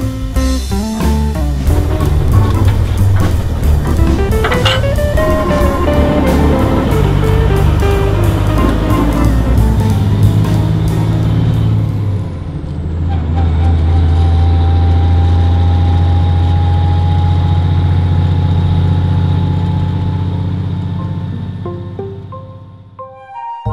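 Background music for roughly the first half. After that, a steady low engine drone heard from inside a truck cab while driving, with a faint whine slowly rising in pitch.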